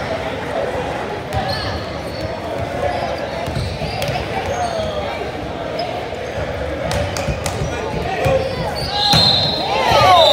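A basketball bouncing on a gym's wooden floor, with spectators' voices and chatter in an echoing hall. A brief high shrill tone sounds near the end.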